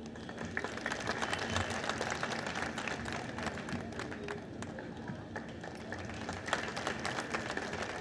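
People applauding: irregular hand claps, building about half a second in and easing slightly toward the end.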